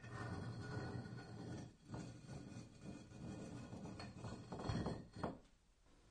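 Masonry sound effect: stone blocks scraped and set in mortar with a trowel, a continuous rough scraping with a few knocks that stops about five seconds in.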